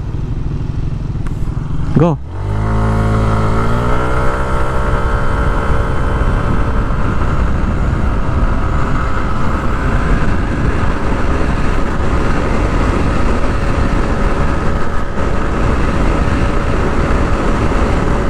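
Yamaha NMAX scooter's single-cylinder engine at full throttle from a standstill. After a moment of idling, the revs climb quickly for about two seconds as the Speedtuner CVT clutch, with its 1,500 rpm springs, engages. The pitch then holds nearly steady while the CVT shifts up and road speed climbs toward 100 km/h, with wind noise rising over it.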